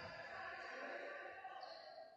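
Faint background sound of an indoor basketball game in a large gym, with distant voices echoing in the hall.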